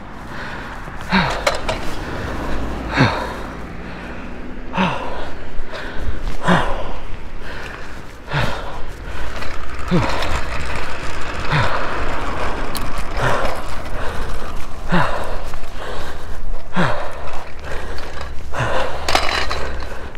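A man breathing hard with a short falling groan on each breath out, about every two seconds, from the effort of pushing a kick scooter uphill. Steady wind rumble on the microphone underneath.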